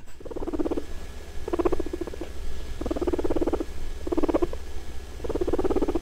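Guinea pigs making a rapid, pulsing call in five short bouts about a second apart, over a low steady hum.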